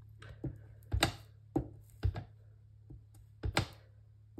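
A small clear acrylic stamp block with a photopolymer stamp tapping and knocking as it is inked and pressed onto cardstock: about seven short, sharp taps, some in quick pairs, over a steady low hum.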